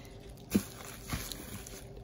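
Quiet handling of white packing paper over a cardboard box, with a soft tap about half a second in and a fainter one a little past the middle.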